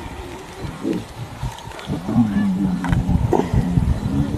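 Male lion growling low as he mounts a lioness to mate, the growl starting about two seconds in and carrying on in a pulsing run.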